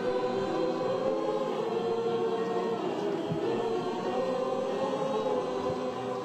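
A choir singing slow, long-held notes.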